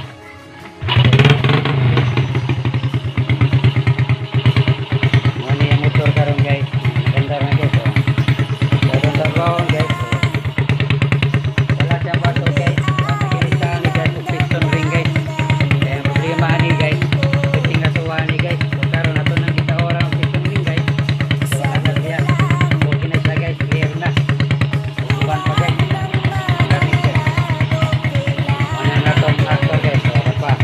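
SRM 100cc motorcycle engine running steadily on a test run. It comes in about a second in and keeps an even, rapid firing beat throughout, under a song with singing.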